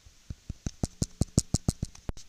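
A quick run of sharp knocks starting a moment in, about six a second and coming faster toward the end.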